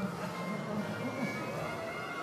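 Circus band music playing steadily.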